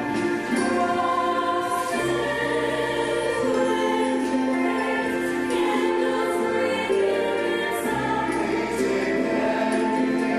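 Mixed-voice show choir singing held chords over an instrumental accompaniment with a bass line that changes note every couple of seconds. Light, high percussion ticks keep a beat over it.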